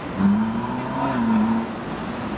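Road traffic far below, with one vehicle's engine note standing out for about a second and a half, rising slightly in pitch and then falling away.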